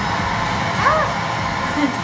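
Household vacuum cleaner running steadily at low power, pulling suction through a BabyVac nasal aspirator whose tip is held in a nostril.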